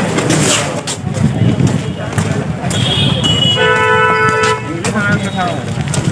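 Voices chattering, then a vehicle horn honks once, a flat steady note of about a second, a little past the middle.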